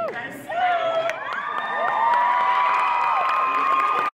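Audience cheering, with a rising-and-falling whoop, then several long, high-pitched held screams.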